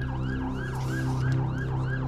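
An electronic siren warbling in quick rising-and-falling sweeps, about four a second, over a steady low drone.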